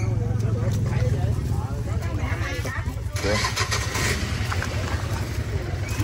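An engine running steadily with a low, even hum, under people's voices.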